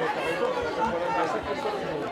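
Several voices shouting and calling over one another at once, the open-air chatter of players on a football pitch.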